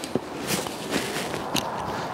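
Footsteps on asphalt pavement: a few separate steps over steady background noise.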